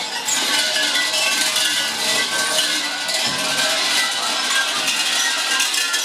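Shinto shrine bells jingling steadily, a dense shimmer of many small bells with held musical tones underneath.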